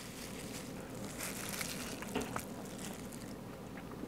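Quiet room tone with faint, soft handling noises and a few small ticks from gloved hands working a juicy slice of smoked brisket.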